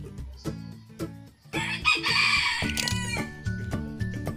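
A rooster crowing once, starting about a second and a half in and lasting over a second, the loudest sound, over background guitar music.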